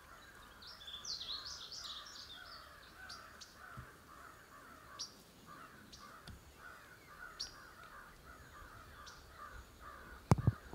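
Faint birds calling, with a brief burst of high birdsong about a second in and short high chirps here and there.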